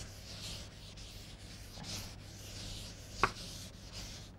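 Chalkboard duster wiping chalk off a blackboard in repeated hissy strokes, with one sharp tap against the board about three seconds in.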